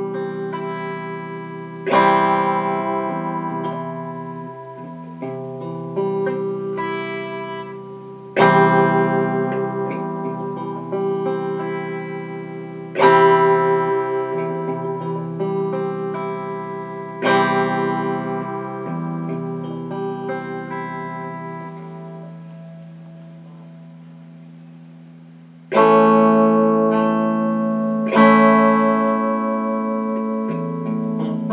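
Red Stratocaster-style electric guitar played slowly: chords struck and left to ring out and fade, with lighter single notes between them. One chord fades for several seconds before a loud new chord near the end.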